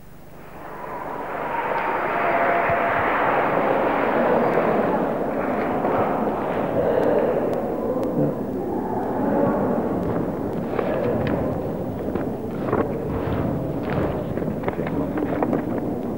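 Audience applauding: the clapping swells over the first two seconds, then thins in the second half so that separate claps stand out.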